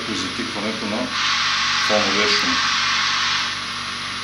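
Hiss from a nonlinear junction detector's audio output, swelling about a second in and easing off a little after three seconds, over muffled, dull-sounding voices.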